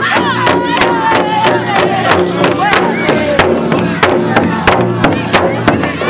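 Children's drum group singing a pow wow song in high voices, with falling melody lines, while beating a large pow wow drum together in a steady beat of about three strokes a second.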